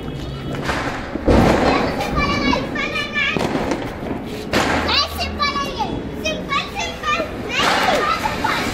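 Children's voices calling and chattering excitedly, with a loud thump a little over a second in.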